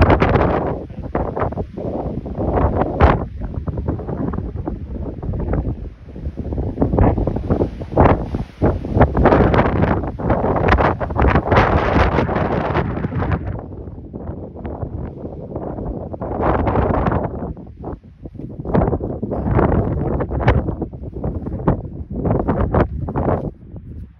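Wind buffeting the microphone in loud, uneven gusts that ease briefly a little past halfway.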